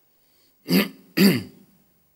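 A man clearing his throat: two short rasping bursts, about half a second apart, a little past the first half-second.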